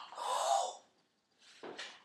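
A man's loud breathy gasp with a bent pitch in it, then silence and a second, shorter breath near the end.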